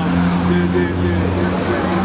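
A motor vehicle engine running with a steady low hum, heard with street voices.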